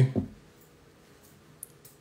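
The tail of a spoken word, then quiet room tone with two faint, sharp clicks near the end.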